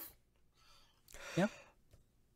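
A person's short sigh with a falling pitch about a second in. Near silence before and after it.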